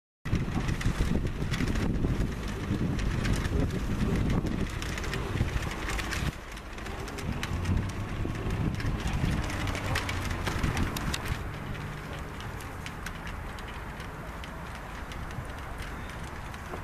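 Wind buffeting the microphone over a low steady rumble. It drops suddenly about six seconds in and softens further near the end.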